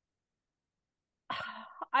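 Silence, then a little over a second in, a woman's brief throat clearing, followed at the very end by the start of her speech.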